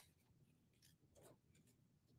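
Near silence, with a few faint snips of scissors cutting paper around an envelope.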